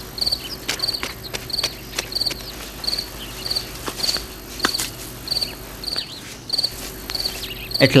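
Insect chirping steadily, a little under two short pulsed chirps a second, with scattered faint clicks.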